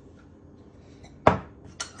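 Sugar poured from a drinking glass into a glass mixing bowl of eggs, quiet at first, then one sharp glass-on-glass knock a little past a second in and a lighter click shortly after.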